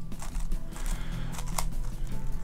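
DaYan NeZha 5M 5x5 magnetic speedcube being turned by hand: a few separate plastic clicks as its layers turn and snap into place. The turning is quiet and slightly rough.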